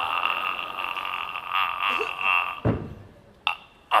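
A man holding one long, high sung note of a Peking opera aria, wavering slightly. It breaks off about two and a half seconds in with a brief low thump, and a short sharp sound follows near the end.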